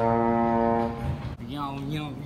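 Slide trombone holding one long steady note that stops about a second in.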